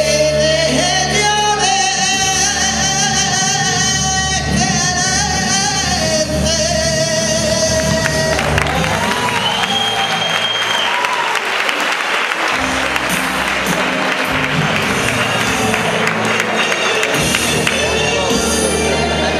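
Male copla singer holding the song's last long, wavering note over recorded backing music. About eight and a half seconds in, the audience breaks into sustained applause that continues as the music plays out.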